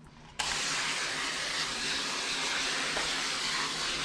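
Water spraying steadily from a hand-held hose sprayer onto a dog's soapy coat. The hiss starts suddenly about half a second in and stays even.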